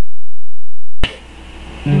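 Silence for the first half, then a click as faint room noise comes in. Near the end a guitar is struck and rings, together with a man's murmured "mm-hmm".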